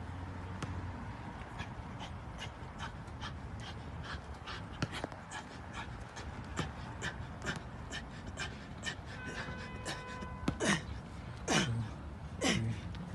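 A man panting hard and fast from exertion during a set on parallel bars, about two to three short breaths a second. Near the end come louder, voiced, strained exhales.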